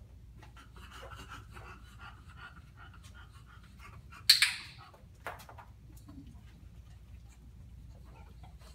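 A bulldog panting, then about four seconds in one sharp, loud click from a training clicker, followed a second later by a fainter tap.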